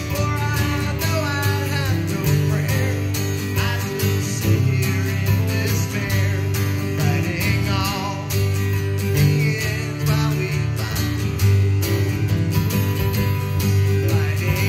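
Two acoustic guitars played live together in a country-style tune, a steady rhythm with a melody line gliding over it.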